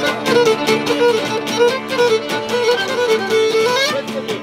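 Cretan lyra playing an ornamented melody over two laouta strumming a steady rhythm: an instrumental passage of Cretan folk music without singing.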